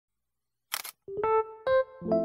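A single camera shutter click a little under a second in, followed by a few keyboard notes stepping upward in pitch as music begins.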